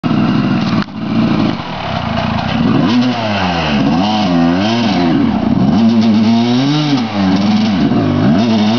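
Dirt bike engine revving hard in a mud bog. From about three seconds in, the revs rise and fall again and again as the bike is bogged down and fails to get through the mud.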